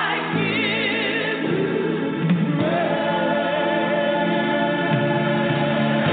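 Gospel choir singing held notes with vibrato over accompaniment. The sound is thin and band-limited, like a low-quality radio stream.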